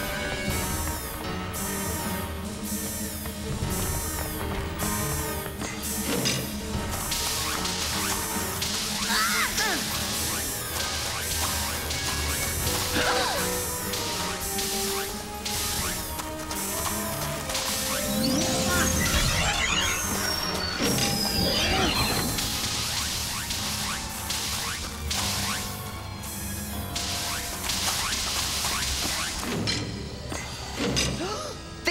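Cartoon action score with a steady driving beat, laid over crash and impact sound effects, with sweeping electronic glides about two-thirds of the way through.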